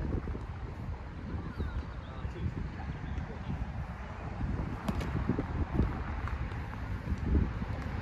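Wind buffeting the microphone, with indistinct voices in the background and a single sharp tap about five seconds in.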